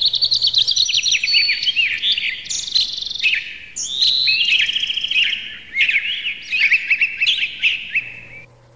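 Songbirds singing: a dense run of quick chirps and rapid trills, several phrases overlapping, fading near the end.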